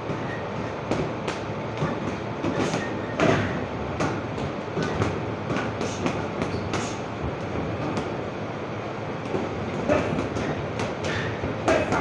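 Boxing gym training noise: gloved punches thudding on heavy punching bags and padded targets at irregular moments, over a steady din of shuffling feet and general gym activity.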